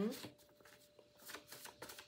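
A deck of coloured paper cards being shuffled by hand: quiet, irregular flicks and slaps of card against card.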